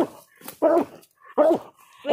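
Coonhound barking treed at a hollow den tree, with three short barks less than a second apart: the sign that the dog has trailed a raccoon to this tree.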